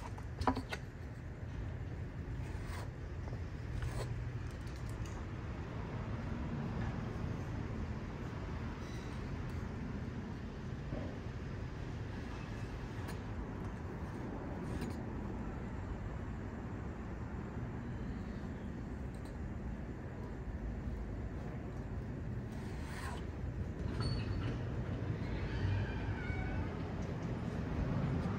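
Putty knife working wood filler into a speaker cabinet's chipped corner: a few light clicks and taps over a steady low outdoor rumble.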